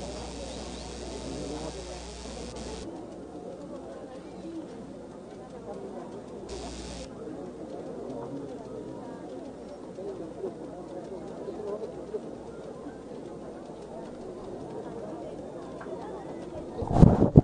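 Low murmur of a large crowd's distant voices. A steady electrical hum sits under it for the first three seconds or so, cuts off, and comes back briefly about six and a half seconds in.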